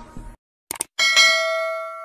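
Subscribe-button sound effect: a few quick clicks, then about a second in a bright notification-bell ding, struck twice in quick succession and ringing out.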